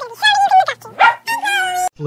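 A few high-pitched, animal-like vocal calls in quick succession, with gliding pitch. They cut off abruptly just before the end.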